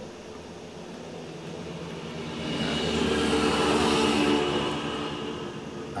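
A passing vehicle: a mechanical hum with several steady low tones and a faint high whine, growing louder to a peak about four seconds in and then fading.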